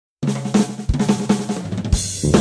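Instrumental track opening on a drum kit playing a quick fill of snare hits with cymbals and kick drum over low sustained notes, starting a fraction of a second in.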